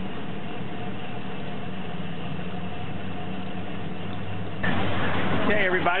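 Suzuki 200 four-stroke outboard idling, a quiet steady low hum. About four and a half seconds in the sound suddenly turns louder and rougher.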